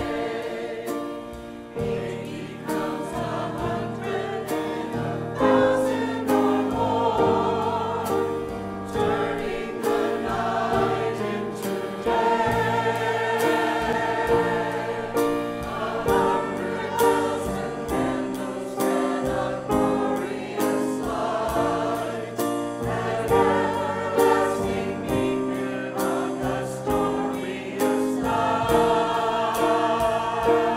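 Mixed church choir of men and women singing together in harmony, holding long notes that change every second or so.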